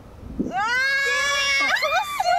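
A drawn-out, high-pitched human cry that starts about half a second in, rises at its onset and bends in pitch near the end: an onlooker's groan of 'so close' as a putt just misses the hole.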